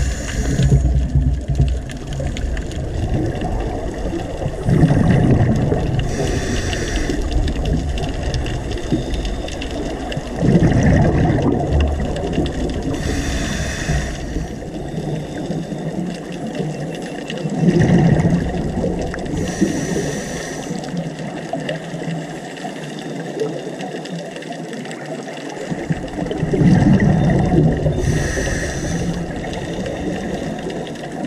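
Scuba regulator breathing heard underwater, about four breaths some seven seconds apart: each a low rumble of exhaled bubbles followed by the hiss of an inhalation through the demand valve, over steady underwater noise.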